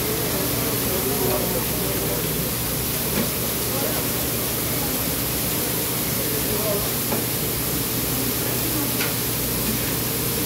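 Chopped meat sizzling on a hot flat-top griddle, a steady hiss as it is stirred with a spatula, with a few light ticks and voices talking in the background.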